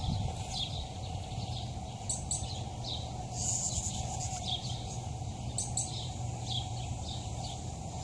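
Birds chirping: short, high calls every second or so, over a steady low rumble.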